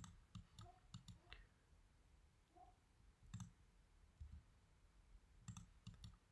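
Faint, scattered clicks of a computer mouse as points are picked in a drawing: a few in quick succession at first, one in the middle and a quick pair near the end, with near silence between.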